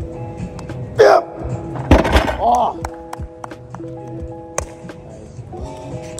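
A barbell loaded with 405 lb of bumper plates dropped from lockout onto gym turf, landing with a single heavy thud just before two seconds in. A loud yell comes about a second in and another right after the landing, over background music.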